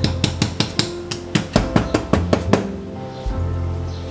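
A metal dosing cup of ground coffee tapped down repeatedly to settle the grounds: a quick, uneven run of about a dozen sharp taps, each with a short ring, stopping about two and a half seconds in. Background music plays under it.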